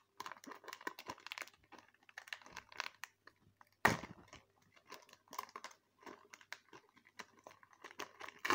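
Foil wrapper of a Pokémon card booster pack crinkling and rustling in the hands as it is opened, in irregular short crackles, with one sharp, louder crackle about four seconds in.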